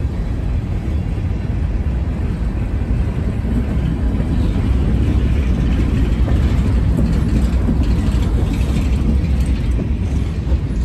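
Covered hopper cars of a freight train rolling past close by: a steady, loud rumble of steel wheels on the rails, getting a little louder and harsher about halfway through.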